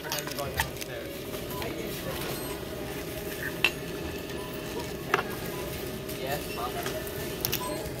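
Busy store background: a steady hum and haze of noise with faint distant voices, broken by a few sharp clicks and clinks.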